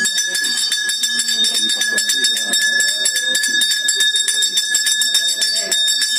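Temple bell rung rapidly and without pause, its metallic ringing tones held steady under fast repeated strokes, over the murmur of a dense crowd of devotees.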